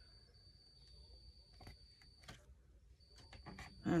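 Faint paper handling: a few light taps and soft rustles as fingers press a glued paper cutout down onto a collage page. A thin, steady high-pitched whine runs underneath and drops out briefly in the middle.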